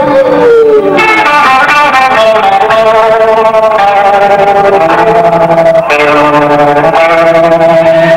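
A live rock band plays an instrumental stretch with distorted electric guitar over drums. A guitar note slides down in the first second, then steady held notes ring out.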